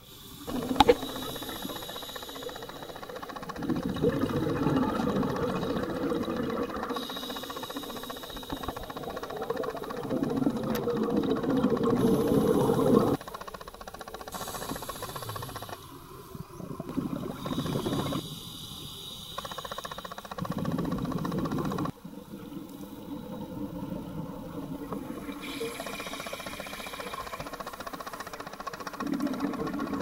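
Underwater sound heard through a camera housing: a scuba diver's regulator sending out exhaled bubbles in bubbling, hissing stretches of a few seconds that come and go with the breathing. The sound changes abruptly a few times where the footage is cut.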